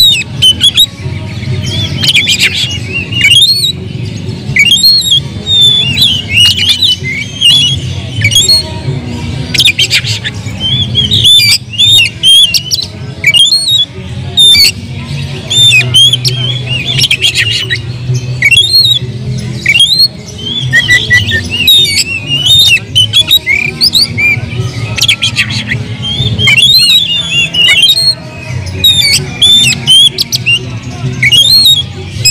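Oriental magpie-robin singing a loud, rapid, unbroken stream of varied whistles mixed with harsh, scratchy notes, over a steady low background hum. It is the bird's aroused, fighting-mode song, given with its tail fanned.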